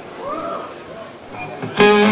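Electric guitar through a stage amplifier: after a quieter stretch, a loud chord is struck suddenly near the end and rings on.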